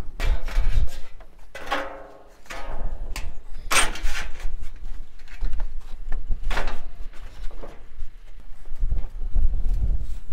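A thin ribbed steel roofing sheet being handled and slid into place on the roof. It makes a few rattles, scrapes and wavering flexes of the sheet metal, the sharpest just before four seconds in.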